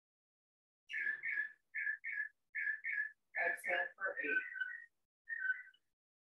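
A bird whistling a short two-note call, repeated in pairs about every 0.8 seconds. The calls fall off to single, fainter notes near the end.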